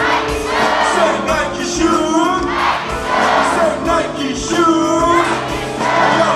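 Live hip-hop concert music: the backing track playing with sung vocals over it and the audience singing along.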